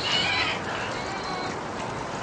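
Young green-winged macaw making soft, faint calls while its wing is held, over a steady background hiss.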